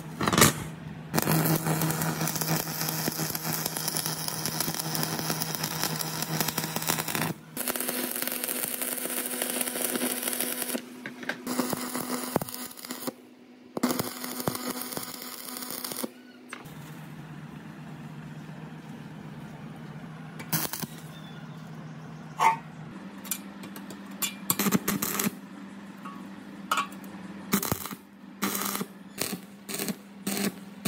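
Stick (arc) welding on steel: long stretches of welding crackle and hiss over a steady hum, louder in the first half and quieter later, broken by short clicks and bursts.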